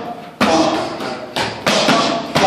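Boxing gloves striking padded focus mitts: three sharp smacks, one about half a second in, then two in quick succession about a second and a half in.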